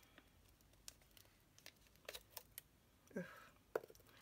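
Near silence with a few faint, scattered clicks and taps of small paper-crafting pieces being handled on a desk mat.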